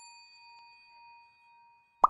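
A bell ding sound effect for a subscribe animation's notification bell, ringing out faintly and fading away, with a faint tick about half a second in.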